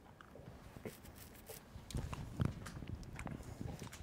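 Faint, irregular clicks and taps from handling at a computer desk, with a soft low knock about two and a half seconds in.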